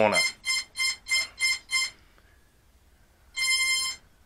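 Cheerson CX20 radio transmitter's electronic beeper giving a run of short beeps, about three a second, for the first two seconds, then one longer beep near the end. The beeping comes as the transmitter is powered on with the throttle down and the right stick held in the bottom right corner, the sequence that puts the CX20 into compass calibration mode.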